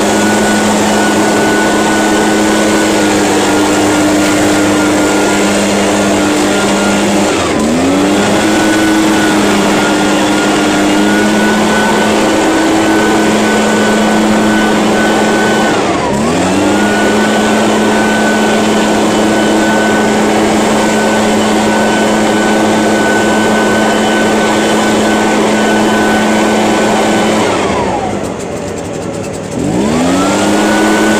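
Echo PB-580T backpack leaf blower's two-stroke engine running at high throttle with one steady pitch. It dips briefly and recovers twice, about a quarter and halfway in, as the throttle is eased and reopened. Near the end it drops toward idle for about two seconds, then revs back up.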